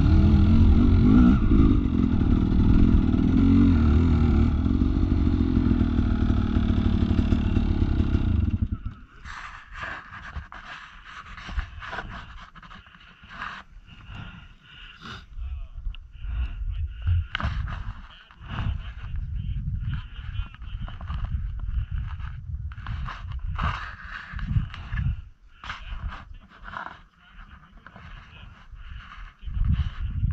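Dirt bike engine running over rocks, then stopping suddenly about nine seconds in. After that, uneven scrapes, clatter and knocks.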